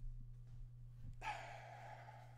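A man's breathy exhaled sigh, starting about a second in and trailing off, over a steady low electrical hum.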